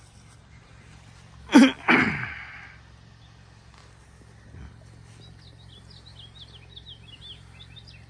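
A person sneezing once, loudly, about one and a half seconds in, a short catch followed by a noisy burst that trails off. Through the second half, small birds chirp in quick high runs over faint outdoor background noise.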